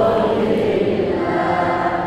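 A devotional Arabic shalawat (blessing on the Prophet) sung in long held notes by a man's voice through a microphone, with other voices chanting along.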